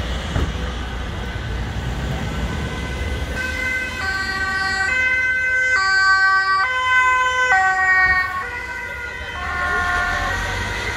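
Ambulance two-tone siren switching between a high and a low tone a little under once a second. It comes in about four seconds in over low traffic rumble, is loudest a couple of seconds later, and grows fainter near the end as the ambulance moves on.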